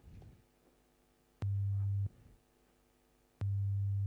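A pure 100 Hz sine-wave tone, low and steady, played twice, each time for well under a second and starting with a sharp click.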